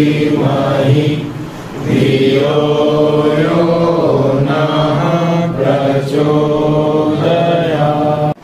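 A man chanting a mantra in long held notes with a slow, gently moving melody, with a short breath break about a second and a half in.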